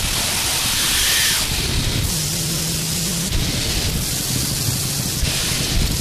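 Loud static-like hiss that changes texture abruptly every second or two, with a faint low hum in the middle stretch.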